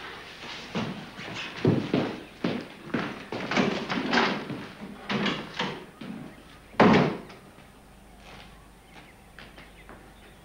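A door slammed shut about seven seconds in, the loudest sound here. Before it come several seconds of irregular shorter sounds, about two a second.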